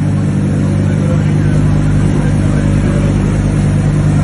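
A car engine idling, a loud steady low drone that holds the same pitch throughout without revving.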